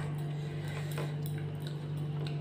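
Fingers mixing and picking up rice on a ceramic plate, a few faint clicks and light scrapes, over a steady low hum.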